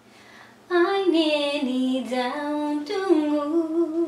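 A woman singing a melodic phrase solo, without accompaniment, starting about a second in; her voice moves in held notes and slides.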